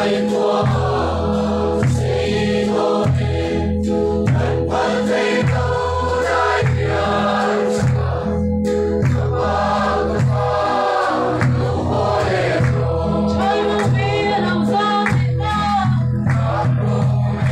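A roomful of people singing a song together in chorus, accompanied by a strummed acoustic guitar.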